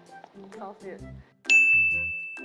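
A bright, bell-like ding sound effect strikes about one and a half seconds in and rings out as a single high tone, slowly fading. It sits over a soft background music bed, with a brief spoken "oh" before it.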